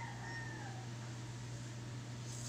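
A single drawn-out animal call that rises and then falls in pitch, fading out under a second in, over a steady low electrical hum.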